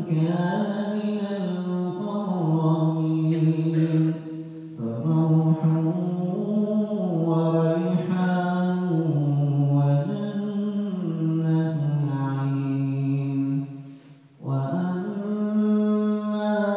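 A man reciting the Quran in melodic tajweed style, holding long drawn-out notes that step up and down in pitch, with a short pause for breath near the end.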